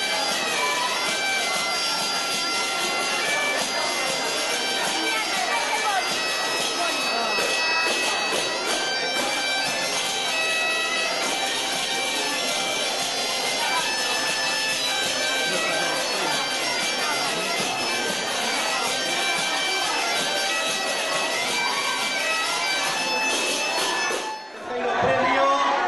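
Galician bagpipe (gaita) playing a continuous tune over its steady drone, with hand-held pandeireta tambourines accompanying and people talking in the room.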